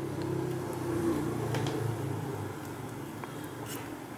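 Low engine hum of a motor vehicle with a steady pitch. It swells about a second in and then eases off, with a few faint clicks over it.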